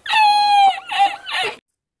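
A man's high-pitched laughter from an inserted meme clip, in a few broken bursts that cut off about a second and a half in.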